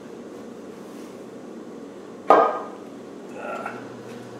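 Land Rover 300Tdi aluminium timing cover knocking against the engine block as it is offered up: a single sharp metallic knock with a short ring, a little over two seconds in, over a faint steady hum.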